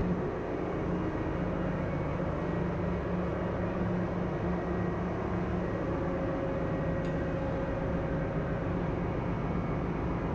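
Steady drone of ship's engine-room machinery, a constant low hum with no breaks.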